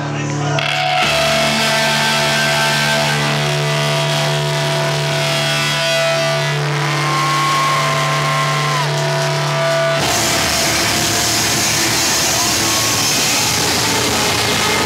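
Screamo band playing live and loud, with distorted electric guitars holding long notes over a steady low bass note. About ten seconds in it breaks into a denser full-band wall of noise.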